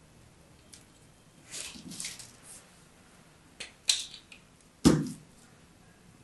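Dry, starch-coated bar soap crumbled and snapped between fingers: a few crumbly crunches, then sharp cracks, the loudest with a dull thud near the end.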